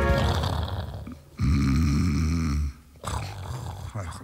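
The last of the music dies away in the first second, then a deep, rasping vocal rumble lasts just over a second, followed by softer low sounds near the end.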